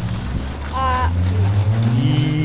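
A car engine running close by, a steady low hum whose pitch rises a little near the end, with a short burst of voice about a second in.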